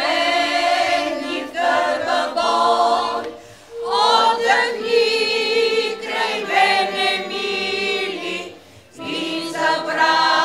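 Women's chamber choir singing a folk song a cappella, in several-voice harmony. The singing comes in phrases broken by brief pauses for breath, with a long held note in the middle.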